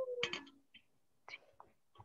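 The tail of a drawn-out "okay" in a woman's voice, falling in pitch and ending about half a second in, then a few faint breathy voice sounds and near silence.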